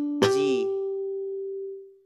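Natural harmonic plucked at the fifth fret of an electric bass guitar's G string about a quarter second in: a clear, chime-like single tone that rings and fades away over nearly two seconds. The previous string's harmonic is still dying out as it begins.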